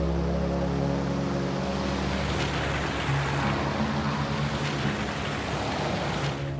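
Cars driving past close by on a road: the rushing noise of a sedan and an SUV swells from about two seconds in and is loudest near the end as they pass. Background music with long-held low notes plays over it.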